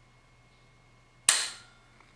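A single sharp click with a short room echo about a second in: a scoped deer rifle dry-fired while aimed, its trigger and firing pin snapping on an empty chamber.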